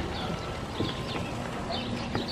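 Footsteps on a wooden footbridge: a few light knocks of shoes on the boards over a steady outdoor background, with faint high bird chirps.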